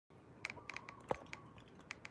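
Fingers tapping and handling a smartphone right at its microphone: a quick run of light clicks and taps, with one louder knock just past a second in.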